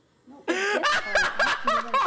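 A grotesque noise from a human voice: loud, warbling squawks that swoop up and down in pitch, starting about half a second in.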